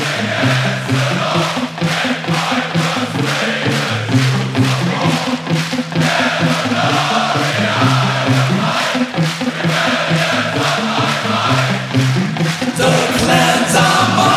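Heavy metal band playing live: a low, steady riff over a regular drum beat, with a festival crowd's voices chanting along. Near the end the music opens up with brighter, higher parts coming in.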